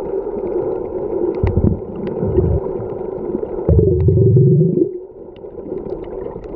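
Muffled underwater sound picked up by a submerged camera: a steady low hiss with scattered sharp clicks. Three low rumbling bursts come through it, two short ones in the first half and a longer one near the middle whose pitch rises.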